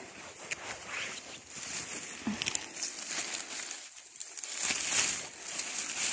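Rustling and crackling of dry fallen leaves and undergrowth as someone steps through the forest floor, brushing past plants, a little louder about five seconds in.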